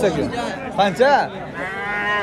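Young calf bawling: short calls about a second in, then a longer drawn-out call near the end.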